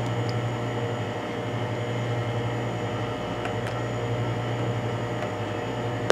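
A steady low machine hum, even throughout, with a couple of faint light clicks about three and a half seconds in.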